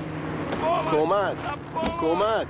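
A man crying out in distress, his voice rising and falling in pitch, with a couple of sharp thuds between the cries.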